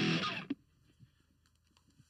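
A short burst of electric guitar that stops abruptly about half a second in, followed by near silence.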